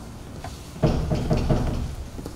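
A quick run of four or five knocks or thuds starting about a second in and lasting about a second.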